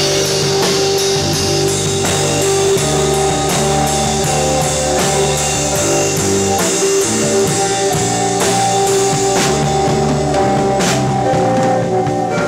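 Live rock band playing: a drum kit with regular cymbal strokes about twice a second under held pitched notes, and a sharper cymbal crash near the end.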